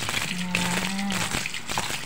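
Tap water running and splashing into a stainless steel sink as a hedgehog is rinsed under the stream by hand, with one short held vocal sound from a woman early on.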